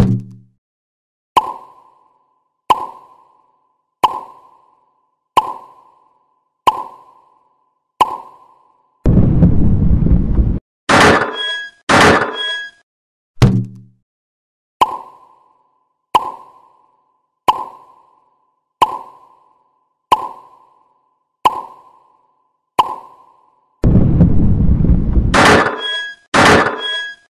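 Cartoon sound effects for a toy train: a short wooden tick about every 1.3 seconds, interrupted twice by a loud noisy rush followed by bright ringing hits. A brief low plop sounds at the start and again about halfway, as a fruit pops into view.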